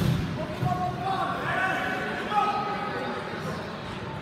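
Voices of spectators and coaches calling out in a gym, with a sharp thud right at the start.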